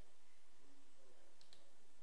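Steady faint room hiss from the narrator's microphone, with a faint computer mouse click about one and a half seconds in.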